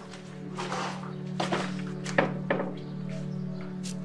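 A few sharp wooden knocks as a large wooden-framed board is handled and set down, with the three loudest close together in the middle. Under them runs background music with a steady low drone.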